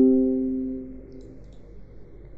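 Windows desktop notification chime: a few quick notes stepping down in pitch, ringing out and fading away within about a second and a half.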